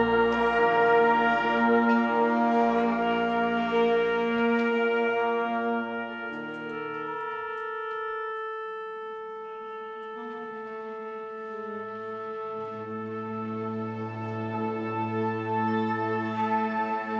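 Concert wind band playing slow, sustained chords with brass prominent; the sound thins and softens about halfway through, then swells again as the low brass and reeds come back in.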